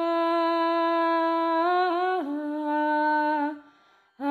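A single voice sings a slow, wordless melody in long held notes. It wavers and steps down in pitch about two seconds in, then fades out shortly before the end.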